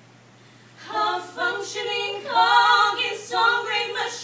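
A small group of voices, led by a woman, singing a cappella in harmony. A brief pause near the start, then the singing comes back in about a second in.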